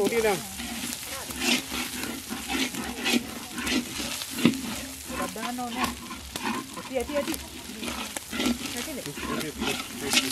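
Seafood fried rice sizzling in a pan while it is stirred, with the spatula knocking and scraping against the pan every second or so. Intermittent pitched vocal sounds run over it.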